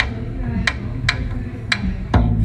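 Hand-played frame drum keeping the beat: four sharp strikes in two seconds, each with a low boom underneath.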